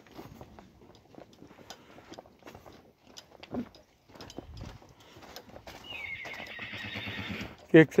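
A horse whinnying loudly near the end, one long call with a fast, shaking pitch. Before it come faint, scattered knocks.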